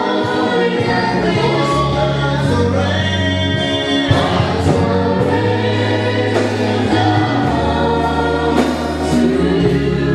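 Gospel choir singing a worship song over long held bass notes that change every second or two.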